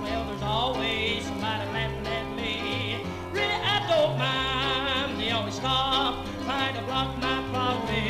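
A recorded Southern gospel song played back over a church sound system: a man singing with a strong vibrato over band accompaniment with a walking bass line.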